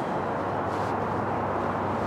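Steady outdoor city background noise: an even low hum with no distinct sounds standing out.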